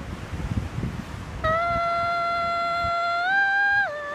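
A woman's voice humming or singing one long, steady held note, rising a step near the end and then dropping, in a wordless melody sketch. Before the note comes in, about a second and a half of low rumbling noise on the microphone.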